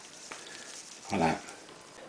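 Quiet room tone broken by one short voiced sound from a man, a brief hum or syllable, a little over a second in.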